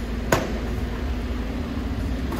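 Diesel engine of a Volvo rear-loader garbage truck running steadily with a low rumble and a faint hum. One sharp click comes about a third of a second in.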